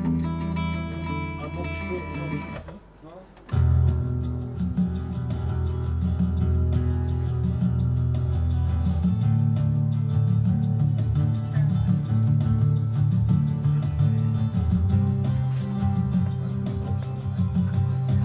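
Guitar music over a steady low drone. It stops briefly about three seconds in, then starts again fuller, with quick repeated strums.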